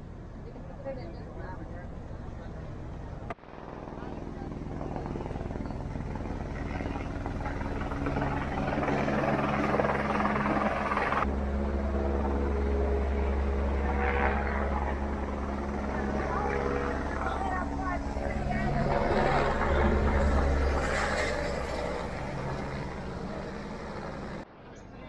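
Helicopter flying nearby: a steady engine and rotor drone with a low beat that builds up a few seconds in, holds loudest through the middle and eases off near the end.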